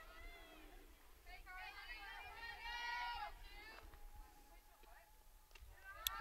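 Faint, distant high-pitched voices calling out across a softball field, loudest between about one and three and a half seconds in.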